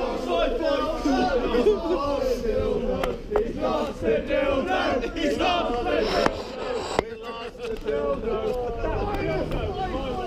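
A group of men shouting and chanting together, many voices overlapping, with a few sharp knocks among them.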